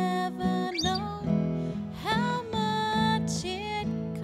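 A woman singing a worship song into a microphone, accompanied by strummed acoustic guitar and keyboard.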